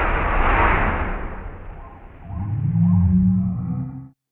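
Slowed-down sound of an aerosol can bursting into a fireball: a deep, drawn-out rumble that fades over about two seconds. Then low, stretched moaning tones, the slowed-down voices of onlookers, rise about two seconds in and cut off abruptly at the end.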